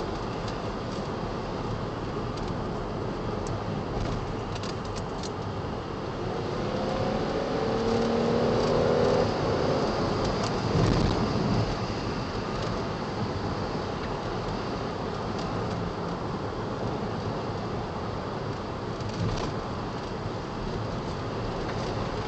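Interior driving noise of a 2010 Ford Flex with the 3.5-litre twin-turbo V6: steady road and tyre noise. From about seven to ten seconds in, the engine note rises as the car accelerates, and this is the loudest stretch.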